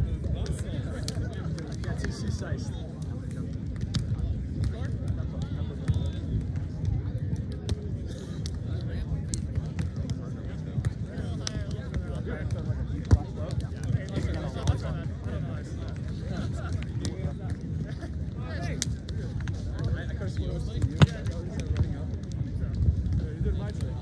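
Beach volleyball rally: sharp slaps of hands and forearms striking the ball over a steady background of many people's voices. Two hits stand out louder than the rest, about halfway through and near the end.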